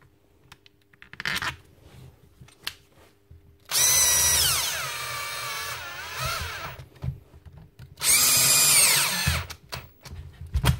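Cordless drill/driver with a long screwdriver bit running screws into a plastic impact-wrench housing in two runs. The first starts about four seconds in and lasts about three seconds, its motor whine falling in pitch as it slows. A shorter second run comes near the end and drops in pitch as it stops. A few light handling clicks come before the first run.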